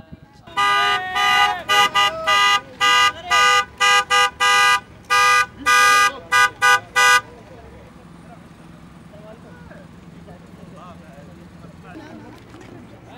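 Car horn honked in a rhythmic celebratory pattern of long and short blasts, about a dozen in some six and a half seconds, then stopping; a low murmur of voices and traffic follows.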